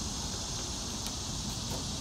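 Steady drone of insects outdoors over a low background rumble, with a few faint clicks of a plastic spoon stirring in a glass flask.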